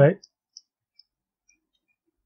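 A few faint, sparse clicks, about four or five over a second and a half, of a stylus tapping on a tablet screen during handwriting.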